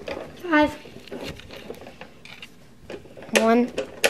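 Scattered light clicks and clatter of hard objects, between two short bursts of a child's voice, one about half a second in and one near the end.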